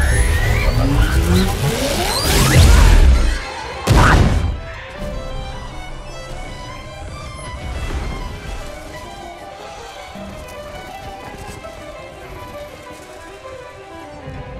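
Film sound effects: heavy crashing impacts with sweeping, gliding whooshes, ending in a sharp hit about four seconds in. Then quieter film score music with held notes.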